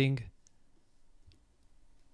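Two faint computer mouse clicks, about half a second and a second and a quarter in, against near silence.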